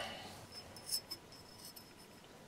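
A fine needle file working the hardened white epoxy fill on a porcelain vase rim: a few faint light clicks and scrapes as the file touches the filler and the porcelain.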